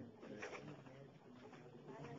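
Faint, low-pitched murmur of a voice away from the microphone, otherwise near silence.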